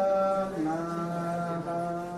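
Devotional mantra chanting: a voice holding long, steady notes, moving to a new pitch about half a second in and again near the end.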